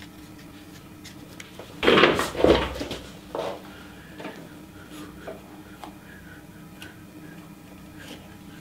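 Hand carving tools knocking together as they are handled, loudest in a short burst about two seconds in, with a smaller knock just after. Between them come faint scratches of a marker drawing on cypress bark.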